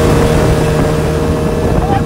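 Speedboat running at high speed close by: a steady engine drone under a loud rush of water and spray.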